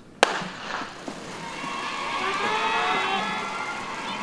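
A starting gun fires once, a sharp crack about a quarter second in, sending the sprinters off in a 100 m start. Spectators then shout and cheer, growing louder from about a second and a half in.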